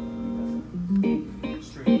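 A single held instrument note lasting about a second, then three short notes, the last the loudest, like an instrument being tried out between songs.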